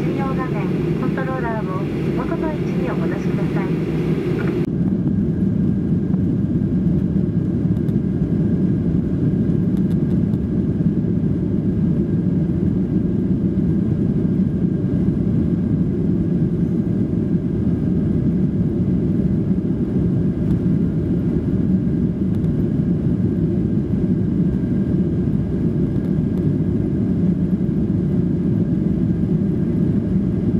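Boeing 737-800 cabin during the takeoff roll: the CFM56 jet engines at takeoff power give a steady, low, loud noise. A cabin attendant's announcement is heard for the first few seconds and cuts off suddenly.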